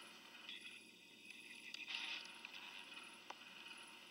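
Near silence: faint room hiss with a soft rustle in the first half and a single small click about three seconds in.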